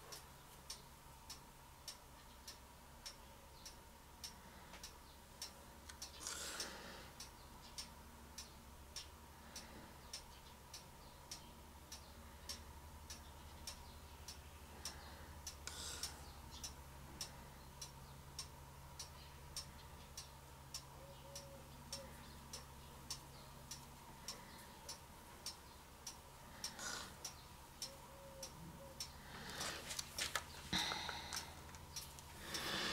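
A clock ticking faintly and steadily, with the ticks evenly spaced, and a few short soft rustles in between.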